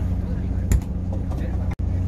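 Steady low drone of an idling boat engine. A single sharp knock comes about three quarters of a second in, and the sound cuts out for an instant near the end.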